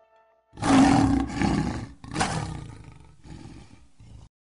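A lion's roar sound effect starting about half a second in, loudest at first, with a second surge just after two seconds, then trailing off.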